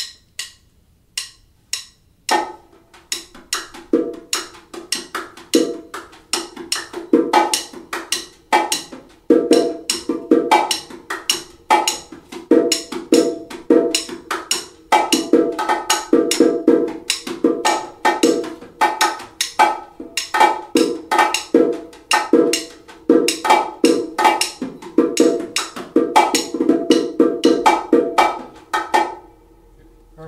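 Son clave clicked out on wooden claves, joined after about two seconds by bongos playing the steady martillo pattern: quick strokes on the two drums, the higher and the lower, syncopated and following the clave. The playing stops shortly before the end.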